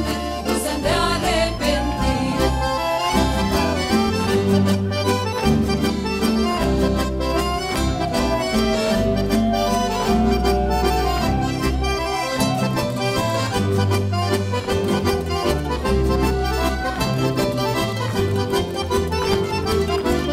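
Live traditional folk dance music from an ensemble with guitars, with a steady bass beat under a held melody line.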